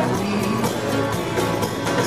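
Live pop-rock band playing through loud concert speakers, with guitar over a steady drum beat, heard from the audience.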